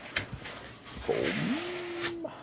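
Foam packing insert scraping and rubbing against the cardboard box as it is pulled out, with a couple of clicks. Past the middle the scraping grows louder, and a single tone rises and then holds steady.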